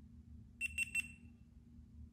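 GoPro HERO8 Black action camera's power-on chime: three quick, high-pitched beeps just over half a second in, as the camera switches on.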